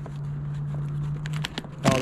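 A steady low hum held for about a second and a half, then a few sharp clicks near the end as the metal latch of a vintage suitcase is worked open, with a short vocal sound among them.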